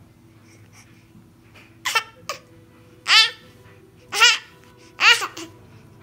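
A baby's high-pitched squeals and babbling: four short, loud calls about a second apart, each bending in pitch.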